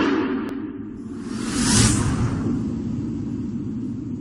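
Logo-intro sound effects: a whoosh fading out in the first second, a second whoosh swelling and peaking just before two seconds in, over a steady low drone.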